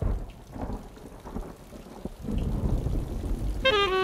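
Thunder rumbling over falling rain, swelling louder about halfway through. Near the end a sustained wind-instrument melody begins over it.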